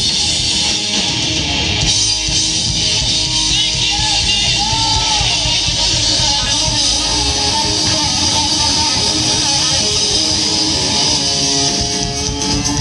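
Hard rock band playing live and loud, electric guitars and drums, with bending guitar notes, heard from within the crowd.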